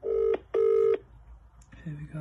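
Ringback tone of an outgoing mobile call on speakerphone: the British-style double ring, two short steady tone pulses close together, heard while the other phone rings. Near the end there is a brief low sound as the call is answered.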